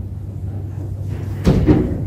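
Two quick knocks on the chess table about one and a half seconds in, the sound of a move being played at the board, over a steady low hum.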